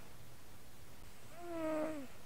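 Sleeping tabby cat snoring, picked up by a microphone on its chest: one short, pitched, squeaky breath sound about a second and a half in, over a steady faint low background.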